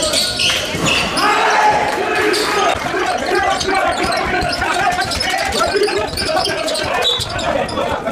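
A basketball bouncing on the sports-hall floor during live play, with indistinct voices of players and spectators and the hall's reverberation.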